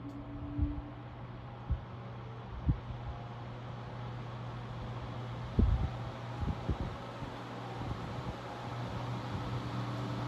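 Vintage Sears 16-inch high-velocity fan with aluminum blades running, its rush of air growing steadily louder as the shaded-pole motor slowly comes up to speed, over a steady low hum. The fan's wind buffets the microphone in several low thumps, strongest about six seconds in.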